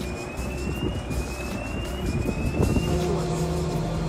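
Chairlift station machinery running with a steady low hum, with a few clacks around the middle. Three rising whistle-like tones, each about a second long, sound one after another over the first three seconds.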